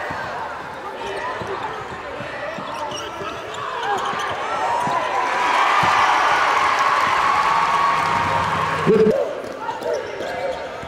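Game sound in a basketball gym: a basketball dribbled on the hardwood floor, sneakers squeaking, and the crowd's and players' voices. The crowd noise grows louder from about halfway in, and a voice shouts near the end.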